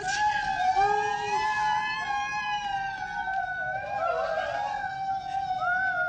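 A loud, piercing high-pitched wail, held steady for about six seconds with a slight waver in pitch, like a siren. Shorter pitched cries rise and fall over it, about a second in and again after about four seconds.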